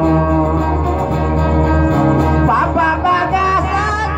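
Live guitar music with held notes over a steady low drone, and a man's singing voice coming in about halfway through.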